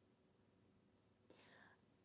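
Near silence: room tone, with a faint breath just before speech resumes near the end.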